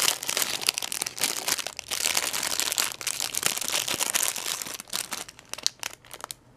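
Thin clear plastic bag crinkling as it is opened and a wax melt cube is pulled out: a dense crackle that thins to scattered crackles near the end.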